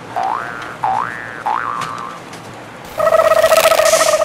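Electronic toy gun sound effects: three quick rising chirps one after another, then a loud rapidly pulsing buzz lasting about a second near the end.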